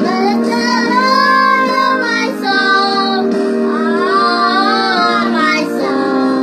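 Children singing a Christian worship song over steady, sustained instrumental accompaniment, in two sung phrases with a short break about two seconds in.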